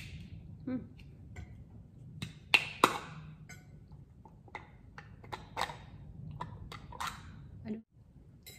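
The seal on a jar of green chili sambal being picked at and peeled off by hand: a scattered run of small crackles and clicks, loudest about two and a half to three seconds in.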